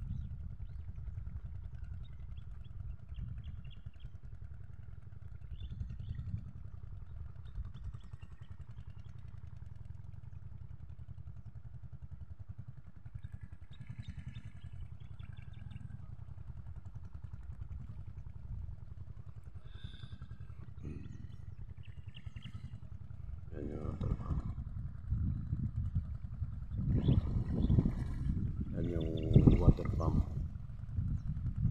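Wind buffeting a phone microphone, a steady low rumble. A voice breaks in about 24 seconds in and again near the end.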